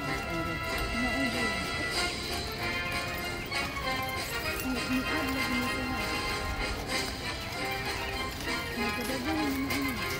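Cavalry horses shifting and stamping their hooves on a gravel parade ground, scattered hoof clicks under steady music and voices.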